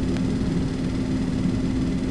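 A steady low rumble, like a running engine or machinery, with one constant hum tone.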